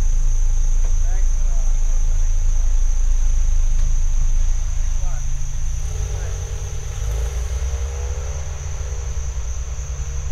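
A Nissan Sentra pulling away from the roadside, its engine note climbing steadily from about six seconds in, over a constant low rumble and a steady high whine.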